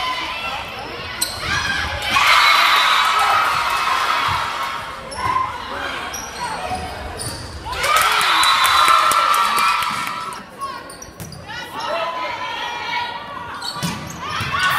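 Volleyball being hit back and forth in an echoing school gym, with sharp smacks of the ball. Crowd voices and shouts rise and fall around them, swelling about two seconds in and again about eight seconds in.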